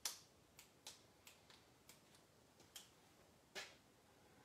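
A series of faint, sharp clicks, about ten of them at irregular spacing, in an otherwise quiet small room; the first click and one about three and a half seconds in are the loudest.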